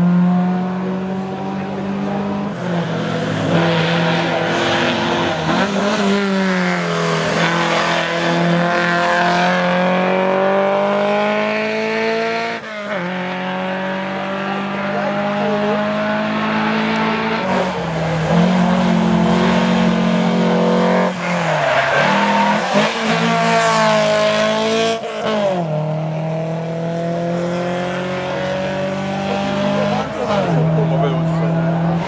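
Historic rally car engine under hard acceleration, its note climbing in pitch through each gear and dropping back at every shift, about every four to six seconds.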